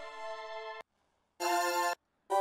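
Korg Triton software synth presets being auditioned one after another, each a steady held synth-pad chord. The first stops under a second in; after a half-second silence, the next preset sounds for about half a second.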